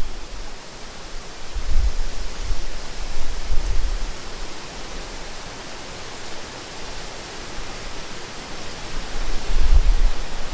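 Steady hiss of wind in the trees, with a few low gusts buffeting the microphone: about two seconds in, near the middle of the first half, and again just before the end.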